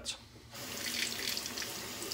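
Bathroom sink tap running, water splashing into the basin, starting about half a second in.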